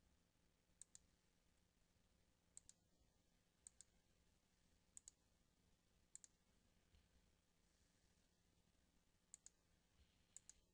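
Faint computer mouse clicks: about six quick pairs of clicks at irregular intervals, over a faint steady hum.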